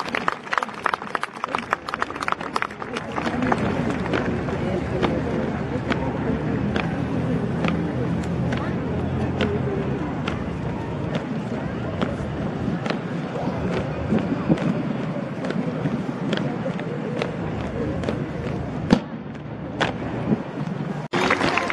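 A rifle drill squad's boots stamping on pavement in unison: a quick flurry of sharp stamps and clicks in the first few seconds, then single sharp steps about every half second to a second. A crowd talks steadily underneath.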